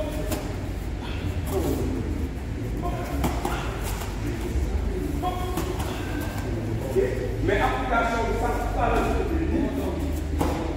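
A man's voice in short, intermittent stretches of speech, with the longest run near the end, heard in a large hall over a steady low hum.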